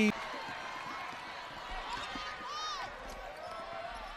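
Indoor basketball game sound: a basketball being dribbled on a hardwood court under a steady, fairly quiet arena murmur, with one short high-pitched call or squeak about two and a half seconds in.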